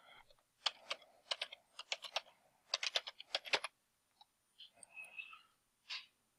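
Typing a password on a computer keyboard: quick key clicks in two runs over about three seconds, then a single sharper click near the end.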